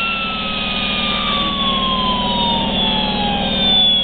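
Dotco air-powered turbine grinder spinning down: a high whine falling steadily in pitch over the hiss of its air exhaust, with a steady low hum underneath. It sounds really clean, with no grittiness or grinding.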